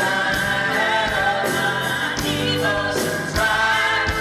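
Country band playing live, with singing over acoustic guitar, electric bass, drums and keyboards.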